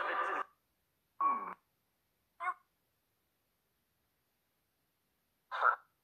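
Chopped, voice-like fragments from a necrophonic ghost-box app: four brief croaky bursts cut off sharply, with dead silence between them and the longest gap, about three seconds, before the last. The uploader takes them for spirit voices saying 'come' ... 'see'.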